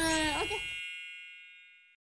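A bright chime sound effect rings once and slowly fades away over nearly two seconds. Under its start, a baby's drawn-out vocal sound ends about half a second in, and the room background cuts off abruptly a moment later.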